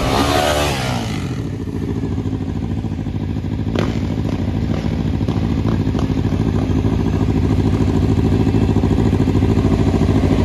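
Motorcycle engines running on a group ride, heard from one of the bikes. The engine note falls in the first second or so, then holds steady and builds slightly toward the end, with a single sharp click about four seconds in.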